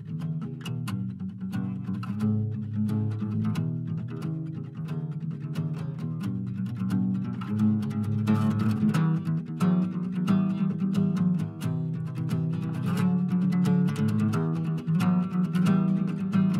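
Several layered acoustic guitar parts playing an instrumental intro: a steady stream of plucked notes over low bass notes, with no singing.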